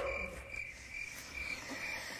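Faint crickets chirping steadily: the comedy sound effect for an awkward silence.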